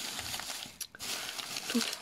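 Clear plastic bag crinkling and rustling as it is handled, with the tea sachets inside shifting; a short break and a sharp click just before the middle.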